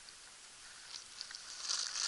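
Quiet outdoor ambience with faint footsteps on paving and light scuffs. A soft rustling builds near the end.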